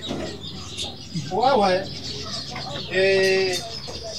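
Two short animal calls: a rising-and-falling call about a second and a half in, and a louder, steadier held call about three seconds in.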